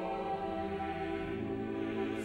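Slow classical music for choir and orchestra, holding sustained chords; the harmony shifts in the bass a little past halfway.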